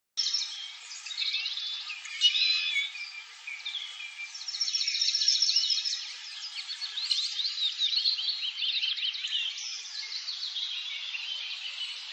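A dense chorus of small birds chirping and trilling, many high, rapid calls overlapping, with a fainter lower chatter beneath.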